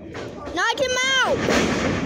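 A loud yell about half a second in, rising then falling in pitch, with a couple of sharp thuds from the wrestling ring. A burst of crowd noise from the audience at ringside follows.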